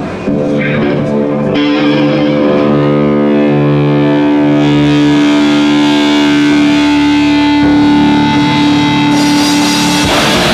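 Amplified, distorted electric guitar played live, letting long chords and notes ring out with only a few changes, as a slow lead-in before a song starts.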